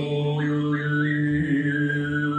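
Mongolian overtone throat singing (khöömei): a steady low drone with a high, whistling overtone melody that steps and glides above it.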